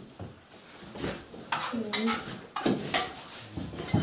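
Spoons and crockery clinking at a table meal: a spoon against a bowl and mugs set down, a few sharp clinks in the second half, with low voices in the background.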